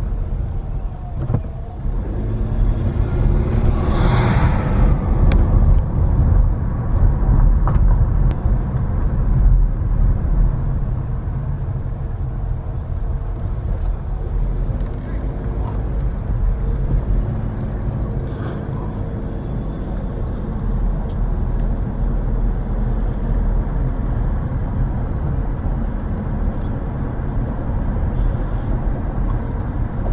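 Car engine and road noise heard from inside the cabin while driving: a steady low rumble, with a brief hiss about four seconds in.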